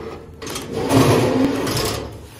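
YOUXIN semi-automatic carton strapping machine running: its motor starts about half a second in and runs loudly as it pulls the plastic strap tight around the carton and seals it.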